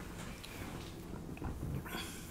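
Quiet room noise with soft breathing, mouth and hand-on-face rubbing sounds picked up close to a microphone. The small sounds grow a little louder late on.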